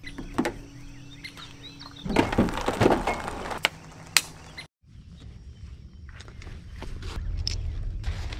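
Handling noises of gear being taken off a trailer: rustling with a few sharp knocks and clicks as a kayak paddle is pulled free, busiest in the middle. The sound drops out for an instant just past halfway, then quieter rustling of gear follows.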